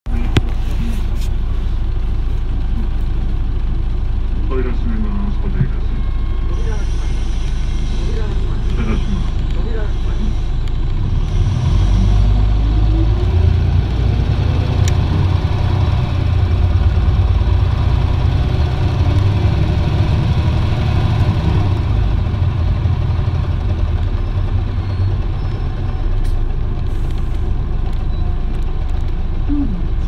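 Interior of an Isuzu Erga city bus: the diesel engine runs low and steady, then about 11 seconds in the bus pulls away and the engine note rises and then levels off as it gets under way. A few muffled voices sound in the first ten seconds.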